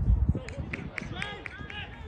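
On-pitch sound of a football match: a heavy low thud at the start, a few short sharp knocks of ball and boots, and players' shouts from about halfway through.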